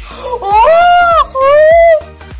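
A high voice wailing a long, loud 'ohhh' twice: the first cry rises and falls, and the second is held level until it stops at the end.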